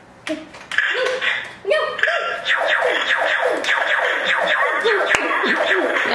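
Toy laser tag gun firing through its small built-in speaker: a rapid run of falling electronic 'pew' zaps, a few at first and then coming several a second from about two seconds in, with a sharp click near the end.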